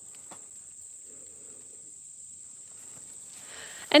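Steady high-pitched insect chorus, crickets or similar field insects, with faint rustling and a single faint click about a third of a second in.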